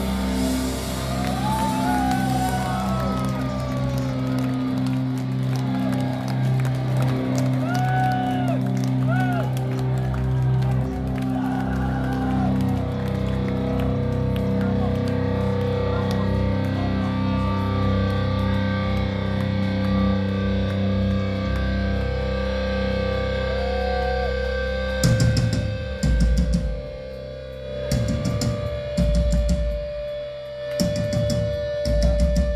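Heavy metal band playing live and loud, with distorted electric guitars holding long sustained chords and some sliding notes over them. Near the end the playing breaks into separate drum hits and chord stabs with short gaps between them.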